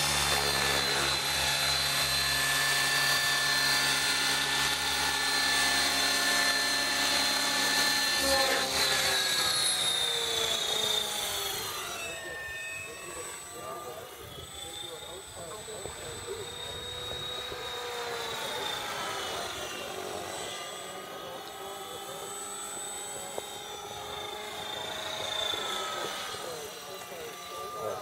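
Electric RC helicopter (Align T-Rex 600E) with its motor and main rotor spooled up, a loud steady whine for about the first nine seconds. It then lifts off and climbs away, and the sound grows quieter, its pitch sweeping up and down as the helicopter manoeuvres overhead.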